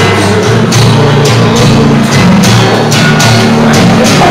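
Live band playing loudly, with a steady drum beat of about two hits a second over sustained bass notes.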